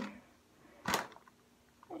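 A single short click about a second in: the toy dog tag knocking inside a bath-bomb egg as it is shaken.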